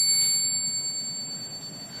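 A small metal bell ringing out after a single strike, several high clear tones fading away over about two seconds.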